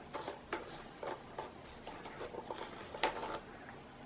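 Folding knife blade slitting the tape seal on a cardboard processor box: a run of light scratches and ticks, with a longer scrape about three seconds in.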